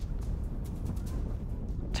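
Wind buffeting the microphone outdoors: a steady low rumble with a few faint clicks. The rolling putt itself makes no distinct sound.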